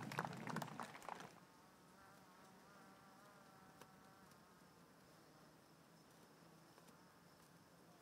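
Near silence. Faint background noise fades out in the first second or so, then a faint, wavering insect buzz comes and goes for a couple of seconds.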